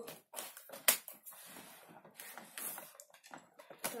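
Scissors snipping at packing tape on a toy box, with crackling of the plastic and cardboard packaging; one sharp click about a second in is the loudest sound.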